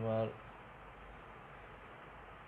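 A man's lecturing voice finishes a word just at the start, then a steady faint hiss of background noise with no other sound.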